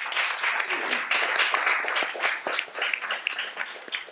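A room full of people applauding, a dense patter of hand claps that is strongest in the first half and thins out toward the end.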